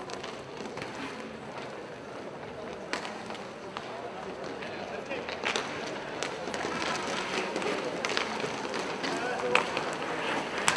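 Inline hockey in play: skate wheels rolling and scraping on the plastic rink floor, with a few sharp clacks of sticks and puck. Indistinct voices of players and spectators sound in the background.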